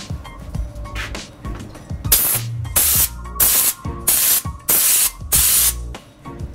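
Compressed-air spray gun with a siphon cup, fed from a compressor, spraying in six short bursts of hiss. Each burst lasts about half a second, and they start about two seconds in.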